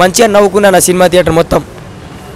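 A man speaking into a handheld microphone, stopping about one and a half seconds in with a short click, after which only a steady, quieter background of street traffic remains.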